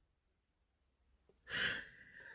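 A man's short breath through the mouth about a second and a half in, after a pause of near silence.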